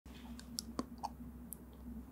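A few faint, short, sharp clicks over a low steady hum.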